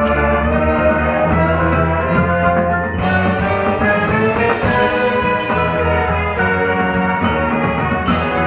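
High school marching band playing its field show: brass and percussion together in sustained chords. The sound swells brighter and fuller about three seconds in.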